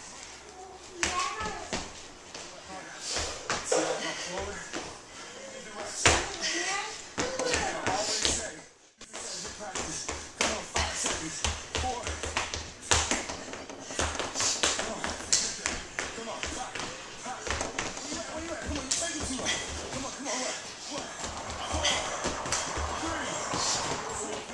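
Quick, repeated footfalls of sneakers landing on a hardwood floor during agility-ladder drills.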